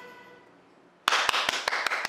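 The last chord of the dance music fades away. About a second in, hands start clapping, roughly five claps a second.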